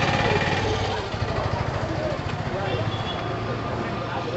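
Busy eatery background: a steady low engine-like hum with faint voices of other people talking.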